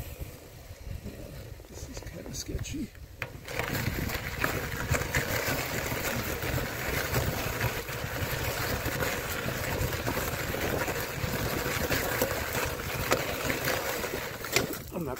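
Bicycle tyres rolling on asphalt with a low rumble, then, about three and a half seconds in, crunching over loose gravel in a steady, dense crackle.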